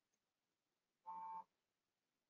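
Near silence, broken once about a second in by a brief, faint tone made of several steady pitches.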